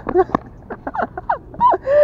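A man's short gasping exclamations and laughter, ending in a drawn-out 'ah' near the end.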